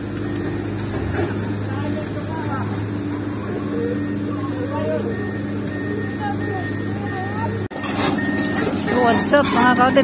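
Heavy construction machinery engine running steadily, a low continuous hum with workers' voices faintly over it. The machinery noise gets louder from about eight seconds in.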